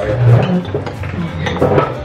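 Tableware at a dinner table: serving tongs and cutlery clinking against a stainless steel bowl and plates, with brief murmured voices.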